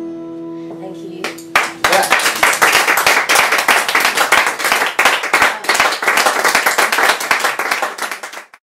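The last chord of a Weissenborn-style lap steel guitar rings out, then a small audience starts clapping about a second and a half in and keeps on steadily.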